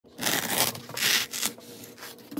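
Serrated knife sawing through a foam pool noodle: two long back-and-forth strokes, then a short third one.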